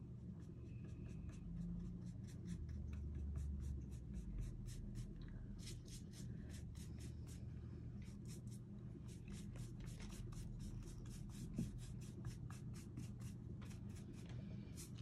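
Paintbrush bristles scratching over a painted wooden pumpkin cutout in quick short back-and-forth strokes, several a second, blending the chalk paint.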